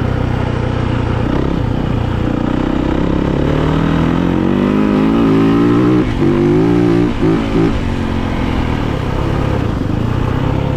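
2019 Yamaha YZ450FX's single-cylinder four-stroke engine pulling hard under acceleration, its pitch rising steadily for several seconds. Past the middle the revs drop and pick up again a few times in quick succession as the throttle is rolled off and back on, then it settles at a steadier, lower run.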